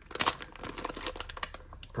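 Clear plastic parts bag being pulled open by hand, with a sharp rip about a quarter second in followed by crinkling of the thin plastic.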